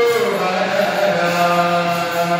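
Voices singing a Hindu devotional bhajan, the notes held long and sliding down in pitch just after the start.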